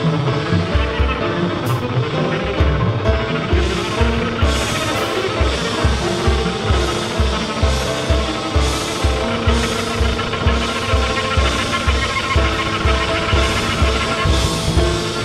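Free-jazz piano trio playing live: arco double bass, piano and drums together, over a steady low pulse about two to three times a second.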